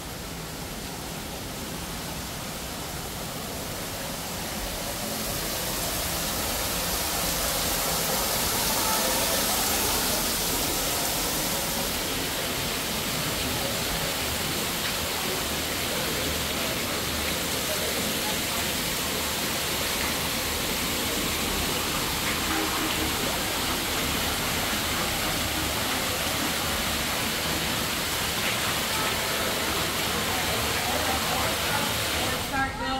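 Fountain water splashing and running steadily, growing louder over the first several seconds, with voices faint in the background.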